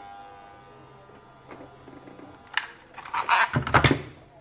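Handling noise from fitting a resistor into a small circuit board: a single sharp click about two and a half seconds in, then a louder cluster of clicks and rustles near the end.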